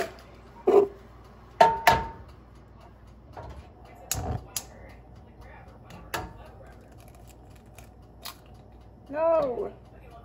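Irregular sharp knocks and clanks of cooking at a gas stove: eggs tapped against a cast iron skillet and the pan clanking, one knock with a brief metallic ring. Near the end, one short meow from a cat.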